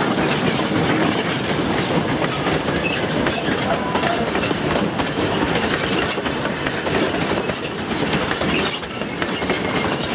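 Queensland Railways C17 steam locomotive 967, its tender and a train of wooden passenger carriages rolling past close by. The wheels clack steadily over the rail joints.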